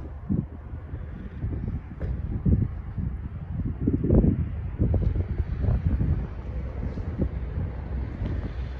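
Wind buffeting the microphone: a low, gusty rumble that swells and fades several times.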